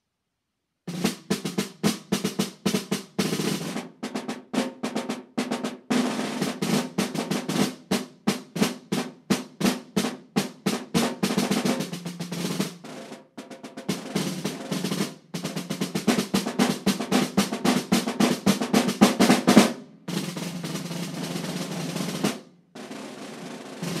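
Two snare drums played together with sticks in a written duet: sharp accented strokes alternating with stretches of rapid strokes, starting about a second in, with brief breaks midway and a softer passage near the end.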